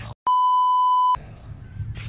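Edited-in censor bleep: one steady, high-pitched beep just under a second long, dubbed over a spoken word, with the sound track cut to silence just before it.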